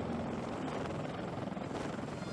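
CH-53E Super Stallion heavy-lift helicopter running close to the flight deck, its rotors and engines making a steady, even noise.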